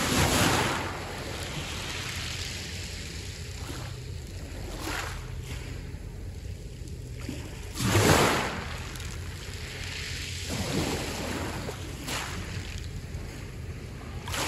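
Small waves breaking and washing over a pebble beach, each surge a short rush of noise every few seconds, the loudest about eight seconds in.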